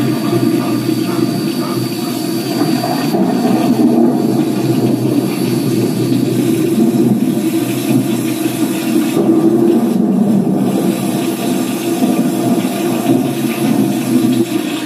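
A television's soundtrack playing through the set's speaker: a loud, steady rushing sound with a low drone underneath, without clear speech.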